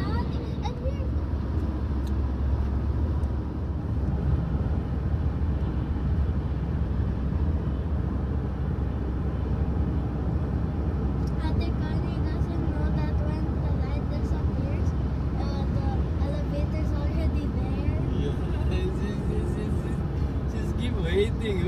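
Steady road and engine rumble heard from inside a moving car's cabin. Faint voices come in about halfway through.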